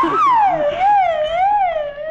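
Film background music: one high melodic line gliding smoothly up and down in slow waves, about two a second.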